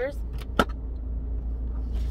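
Steady low rumble of a car's engine idling, heard from inside the cabin, with a single sharp click a little over half a second in.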